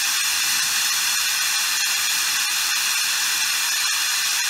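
Acetone-enriched oxyhydrogen (HHO) micro torch flame burning with a steady, even hiss, with thin high steady tones running under it.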